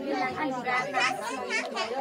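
Several people talking at once, their voices overlapping in a busy chatter.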